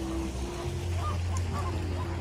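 A flock of flamingos giving short goose-like honking calls, a few of them about a second in, over a steady low hum.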